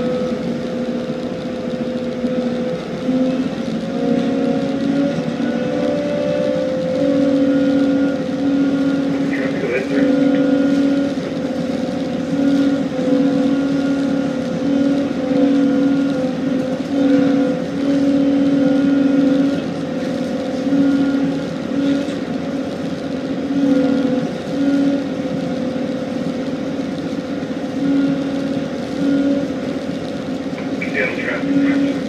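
Tugboat diesel engine running steadily under load while pushing a barge, a loud low drone whose pitch wavers slightly, with the lower note fading and returning every second or so.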